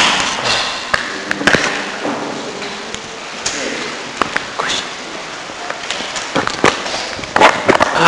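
Room tone of a hall during a pause in talk: steady hiss with scattered small knocks and clicks and faint murmured voices.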